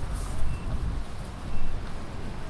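Low rumble of a city street with vehicles, and a faint short high beep repeating about once a second.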